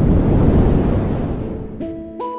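Storm sound effect of rushing wind and rain, a steady noise that fades away over the two seconds. Near the end, light music with repeated plucked notes begins.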